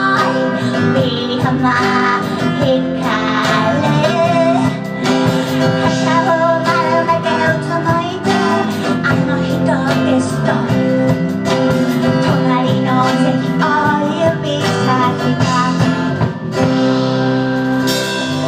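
Live band playing a song: a woman singing in stretches over strummed acoustic guitar, electric bass and keyboard.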